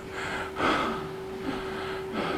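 A person's soft breath-like exhale about half a second in, over a steady low hum.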